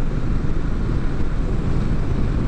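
Steady wind rushing over the microphone of a Triumph Street Twin being ridden at highway speed, a deep even rumble with the motorcycle's engine and road noise blended underneath.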